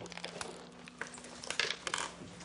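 Soft rustling and a few light clicks, as of objects being handled, over a faint steady low hum.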